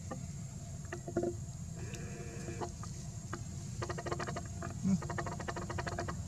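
Macaque calling: a short pitched whimper about two seconds in, then quick runs of squeaky, pulsing calls around four and five seconds in, over a steady low rumble. A brief low thump comes near five seconds.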